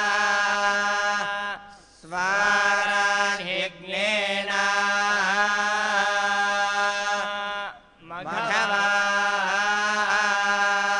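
Male Vedic priests chanting in unison, long phrases held on a near-steady pitch, broken by short pauses for breath about two seconds in, near four seconds and about eight seconds in.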